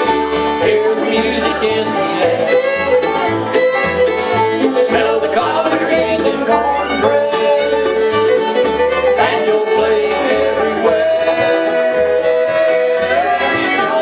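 Bluegrass band playing an instrumental break between sung verses: fiddle, five-string banjo, acoustic guitar and mandolin together over a steady alternating bass line.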